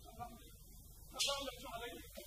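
A man's voice on stage, a short untranscribed utterance starting about a second in with a breathy onset, over a faint low hum.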